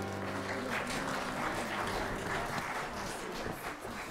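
Congregation applauding a choir's song, with the last held chord of the accompaniment fading out in the first second. The applause slowly tapers off.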